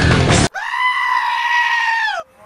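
Music stops abruptly about half a second in and is replaced by a goat's single long scream, held at a steady pitch and dipping slightly as it ends.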